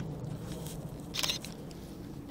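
A quick cluster of small clicks about a second in, from a camera's shutter-speed dial being turned a few detents to a faster setting, over a steady faint background hiss.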